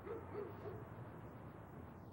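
A bird calling faintly: three short hoots in quick succession in the first second, over a quiet outdoor background.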